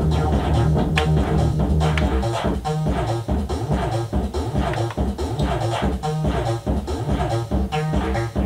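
Electronic groove with a drum beat and bass line playing from a Roland MC-303 Groovebox as its preset pattern is changed on the fly. About two and a half seconds in, the pattern changes, breaking into short repeated notes over the beat.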